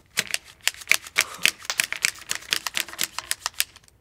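Laser-cut birch plywood pump-action rubber band gun being worked, its ratcheting release mechanism clicking in a rapid, even run of about seven clicks a second that stops just before the end.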